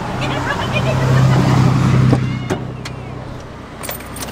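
Van engine idling steadily, left running unattended; the hum grows louder over the first two seconds, then eases off. A sharp click comes near the end.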